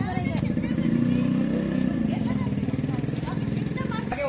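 A small engine running steadily with a fast, even pulse, growing louder about a second in.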